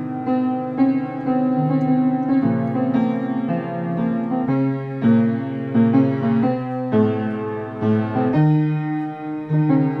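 Solo piano playing chords, each held for about half a second to a second, with a line of notes moving above them.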